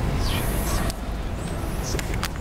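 Outdoor background noise: a steady low rumble, like distant traffic or wind on the microphone, with a brief hiss in the first second.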